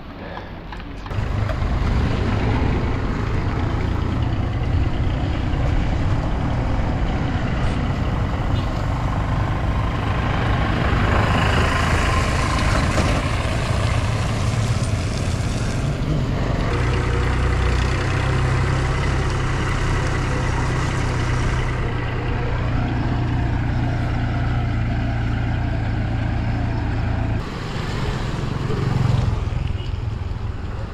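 Wind buffeting the action-camera microphone while cycling on a wet road: a loud low rumble that comes up about a second in, with a brighter hiss swelling for several seconds in the middle.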